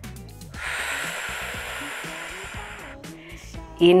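A woman's long, controlled breath out through the mouth during a Pilates exercise: a steady hiss lasting about two and a half seconds, starting about half a second in. Soft background music plays underneath.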